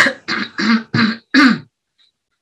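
A woman coughing and clearing her throat: a run of about five short coughs in quick succession, stopping about a second and a half in.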